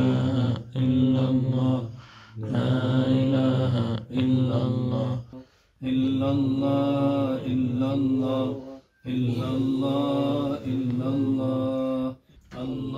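A man's voice chanting a devotional Islamic chant, holding long, slightly wavering notes in phrases broken by short pauses for breath.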